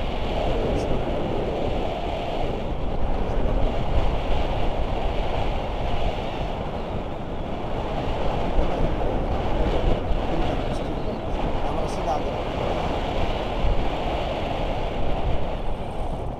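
Wind rushing over a handheld action camera's microphone during a tandem paraglider's descent: a loud, steady rushing that drops away at the end as the glider reaches the ground.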